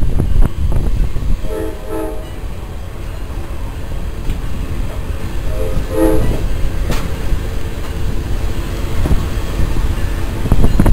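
Train horn giving short chorded toots, two pairs about four seconds apart, over the steady low rumble of the train running along the track, heard from aboard.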